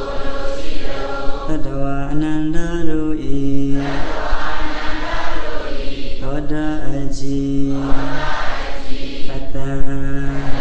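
A Buddhist monk chanting into a microphone: a single male voice holding long, steady notes in phrases, with short breaks between them.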